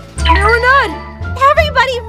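A young woman's voice screams "Ah!" with a long rise and fall in pitch, and a second shout follows about a second later, both over background music.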